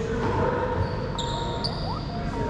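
Sneakers squeaking on a hardwood racquetball court floor as players shift their feet, with short high-pitched squeaks in the second half. A steady background noise fills the echoing court.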